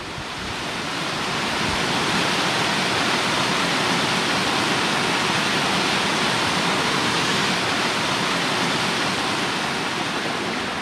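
Water rushing steadily down a small rocky woodland waterfall and brook, swelling in over the first couple of seconds and then holding even.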